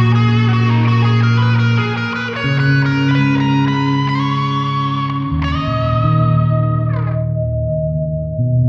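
Progressive rock instrumental passage: electric guitar through effects playing sustained chords over bass notes that change every second or two, with a lead note sliding down near the end.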